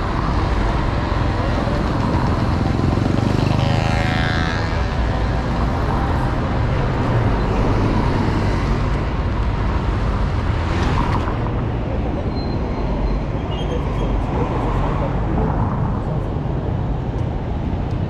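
City street traffic: a steady rumble of cars and motor scooters passing close by. About four seconds in, a single engine grows louder as it goes past.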